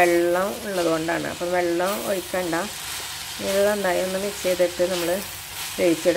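A metal spoon stirring and scraping a grated-coconut and leaf stir-fry in an earthenware pot over the heat. Each stroke gives a short squeaky scrape, over a light sizzle, with a brief pause a little before the middle.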